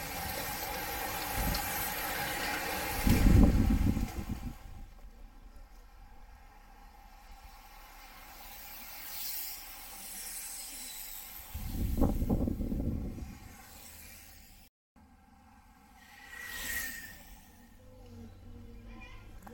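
A group of road racing cyclists passing close by, giving a rushing hiss of tyres and riders that is loudest in the first few seconds and then fades. Low rumbling swells come about three seconds in and again about twelve seconds in.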